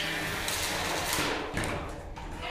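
Combat-robot spinning weapons whirring, then a hit about one and a half seconds in as a spinning steel blade bites into a horizontal bar spinner. A falling whine follows as the weapon slows, its blade stuck fast in the other robot's top plate.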